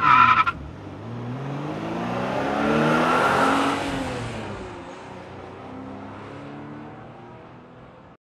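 A car: a short, loud tyre screech at the start, then its engine rising in pitch and loudness for about three seconds before falling away.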